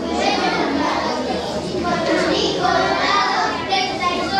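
Many young children's voices talking and calling out at once, a continuous chatter in a large hall.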